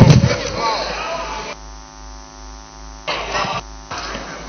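A loud thump, then a steady electrical hum with many even overtones from the sound system, coming in about a second and a half in, breaking briefly, and returning near the end.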